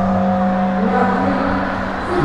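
A steady, held low droning tone with a few fainter overtones above it, holding unbroken.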